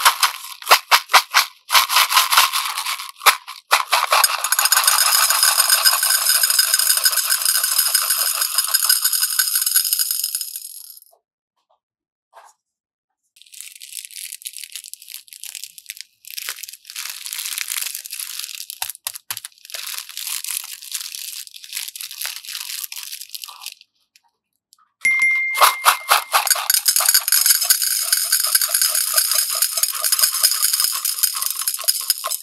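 Small plastic beads poured into a glass bowl, clattering and rattling as they land, in three pours broken by brief quiet gaps about 11 s and 24 s in. The middle stretch is a thinner, higher clatter and rustle, as a plastic bag of beads is handled and emptied.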